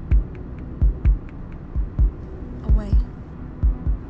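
Heartbeat sound effect: paired low thumps (lub-dub) repeating about once a second over a low steady hum.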